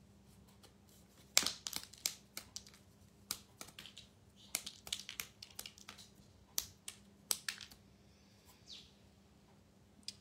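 Faint, irregular clicks and snaps of small die-cut chipboard pieces being poked out of a chipboard flower embellishment. They start about a second and a half in and stop a couple of seconds before the end.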